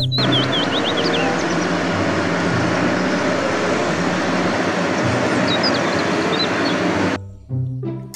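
A large wheel loader's diesel engine and machinery working under load, a steady noisy din with a low rumble that cuts off about seven seconds in. Background music with bird-like chirps plays over it.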